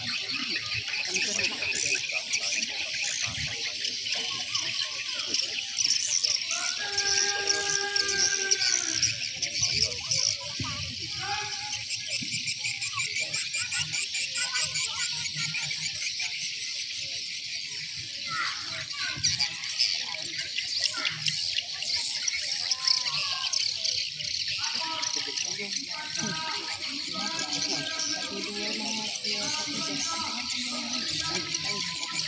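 A steady high-pitched chorus of insects, with distant voices calling out now and then over it.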